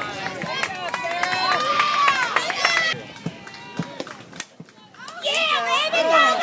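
Overlapping voices of softball players and spectators calling out and chattering. The voices drop away about three seconds in, a single sharp knock comes about a second and a half later, and voices rise again near the end.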